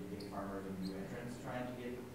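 A person speaking faintly, much quieter than the panel's miked speech.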